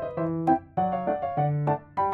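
Light, cute piano background music: short, detached notes in a steady rhythm over a low bass line.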